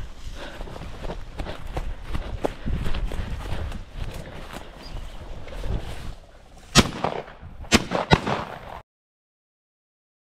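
Footsteps through dry grass, then three sharp clicks in quick succession from a shotgun being handled. The sound cuts off shortly before the end.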